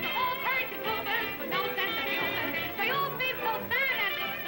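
A woman singing an upbeat popular show tune with wide vibrato, over instrumental accompaniment.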